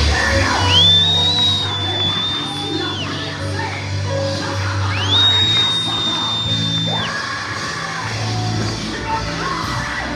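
Live gospel band playing loudly, with drums, bass and guitar in a large hall. Over it, two long high-pitched cries or held notes glide up, hold for about two seconds each and fall away, the first starting just under a second in and the second about halfway through.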